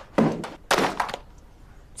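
Two heavy thunks about half a second apart, each with a short ringing tail: knocks against classroom desks and chairs during broom sweeping.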